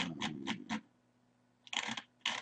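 A quick run of about five clicks from a computer mouse's scroll wheel being turned, with a murmured 'um' under it, then a brief noisy rustle near the end.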